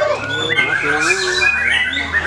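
White-rumped shamas (murai batu) singing over one another: several overlapping whistled phrases of rising and falling notes and chirps, with people's voices behind.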